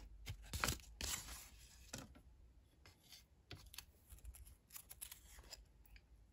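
Old paper Christmas seals being handled: a brief soft rustle of paper about a second in, with a few faint clicks and taps of fingers and paper on the table.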